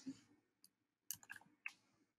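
Faint computer mouse clicks: one at the start, a quick run of three or four a little after a second in, and one more soon after.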